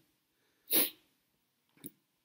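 A single short, sharp breath noise from the narrator, like a sniff or quick intake of breath close to the microphone, about three-quarters of a second in. A faint click follows near the end.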